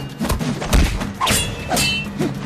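Staged fight sound effects: about four hard hits and thuds in quick succession, the last with a brief metallic ring like a blade clash, over a music score.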